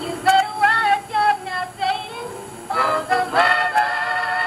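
Gospel singing: voices with vibrato singing short phrases, then a pause and a long held note near the end.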